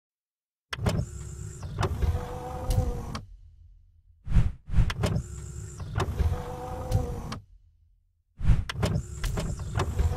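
Mechanical sound effect for an animated logo intro. It plays three times in a row. Each time a sharp clunk is followed by about two and a half seconds of motorised whirring and sliding, with a few knocks.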